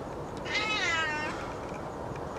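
A cat meowing once, a single call under a second long that rises then falls in pitch, about half a second in.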